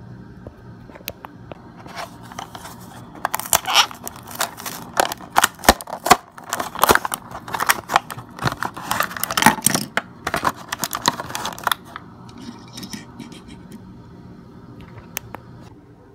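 Plastic blister packaging and cardboard backing crackling and tearing as a diecast toy car is unpacked: a dense run of sharp crinkles and snaps through the middle, thinning out to a few clicks near the end.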